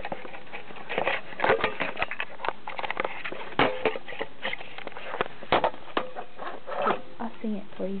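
Handling noise from a hand-held camera being moved about: irregular clicks, knocks and rustles, with faint voices underneath.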